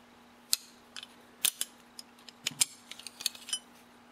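Steel wrench clicking and clinking against steel bar nuts on a chainsaw bar stud, a handful of sharp, irregularly spaced metal taps as the wrench is fitted and turned.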